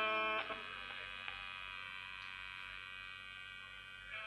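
Electric guitar chord cut off about half a second in, its last notes fading out over a steady mains hum.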